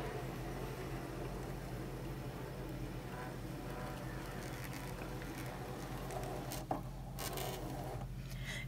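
Brother ScanNCut DX cutting machine scanning: its feed motor and rollers run quietly and steadily as they draw the cutting mat through under the scanner, with a short clunk near the end.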